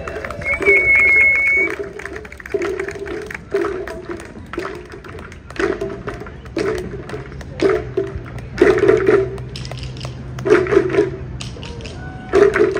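A troupe of Chinese waist drums being struck as they march, an uneven rhythm of sharp drum beats that grows louder and denser in the second half. A brief high whistle sounds about a second in.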